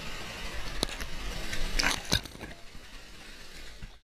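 Water washing and splashing around a surfboard, picked up by an action camera mounted on the board, with a few sharp splashes or knocks about a second in and twice around two seconds. It gets quieter after that and cuts off suddenly at the end.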